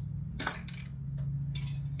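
Aerosol spray paint cans knocking and clinking together as they are picked up: one sharp clink about half a second in, then a few lighter knocks near the end, over a steady low hum.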